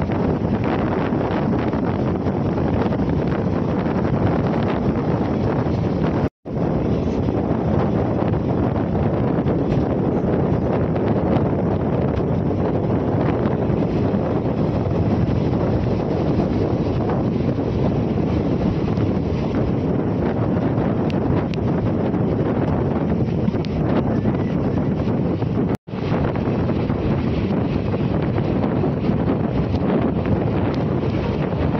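Steady rush of wind buffeting the microphone over the running noise of a moving passenger train. The sound cuts out for an instant twice.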